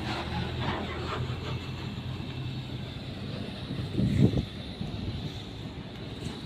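Goods truck's diesel engine running with a steady low hum and road noise, heard from inside the cab; a brief louder sound about four seconds in.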